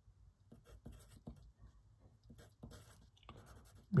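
Pencil writing on paper: a run of short, faint scratching strokes as a number is written out, starting about half a second in and stopping near the end.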